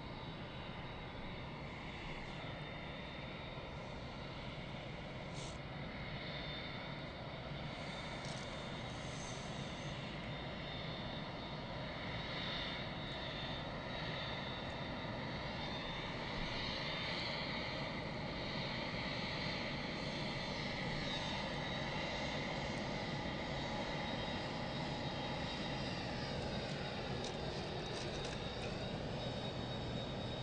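Four jet engines of an Airbus A380 at taxi power: a steady rumble with a high whine, growing slowly louder as the aircraft taxis closer. Near the end the whine bends in pitch as the aircraft comes past.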